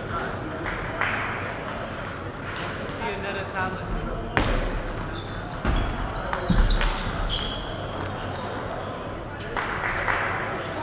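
Table tennis rally: the celluloid ball clicks off rubber paddles and the table, with the loudest hits and thuds of footwork between about four and seven seconds in, and short squeaks from shoes on the court floor. Chatter carries through the large hall.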